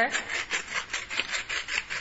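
Pepper mill grinding pepper in a quick, even rasping rhythm of about five turns a second.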